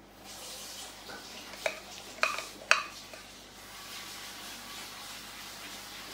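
White acrylic paint squeezed from a plastic squeeze bottle onto the canvas: a soft hiss, with three short sputtering pops about two to three seconds in as air spits from the nozzle.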